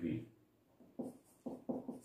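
Marker pen writing on a whiteboard: a few short strokes, about a second in and again near the end.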